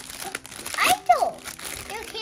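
Plastic Halloween goodie bags and candy wrappers crinkling as they are handled and shaken. A child's voice is heard briefly about a second in.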